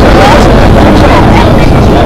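People chatting together outdoors, no single voice standing out, over a loud, steady low rumble.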